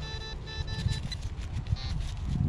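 Gloved fingers handling and rubbing dirt off a small dug-up foil lid: a few light scrapes and clicks over a low rumble.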